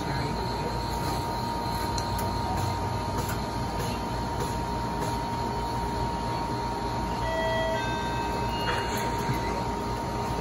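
Steady mechanical hum and whir of an ICEE frozen-drink dispenser and the store's refrigeration running, with a constant high whine through it. A few faint clicks as the dispenser tap handles are worked and the cup is filled.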